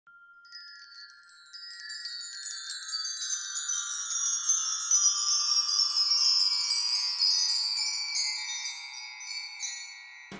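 Shimmering chime tones in a dense cluster that slowly slides downward in pitch, swelling to a peak midway and fading away. It is a logo intro sting.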